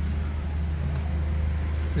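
Steady low rumble of road traffic, with no distinct events.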